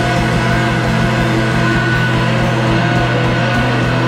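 Live rock band playing loud electric guitars over a drum kit, with held, droning notes and a strong steady low end.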